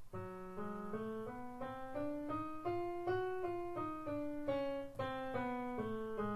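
Piano playing an F-sharp octatonic scale, alternating whole and half steps, one note at a time. It climbs an octave in about three seconds and steps back down to the starting F-sharp.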